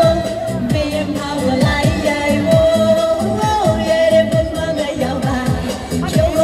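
Chinese dance-pop music from a backing track played over a portable PA speaker: a steady dance beat about twice a second under long-held melody notes, with a woman singing into a handheld microphone.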